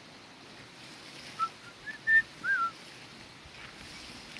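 A bird calling a short phrase of about five clear whistled notes, some gliding up or down in pitch. The phrase starts about a second and a half in, and a held note in the middle is the loudest.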